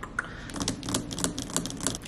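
A quick, irregular run of light sharp clicks, starting about half a second in.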